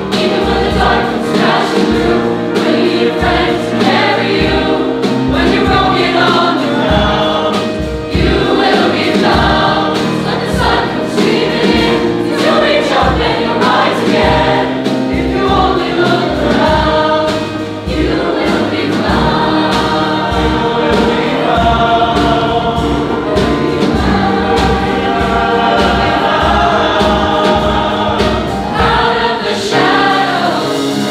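Large mixed choir of men's and women's voices singing in full harmony, with a steady low beat underneath.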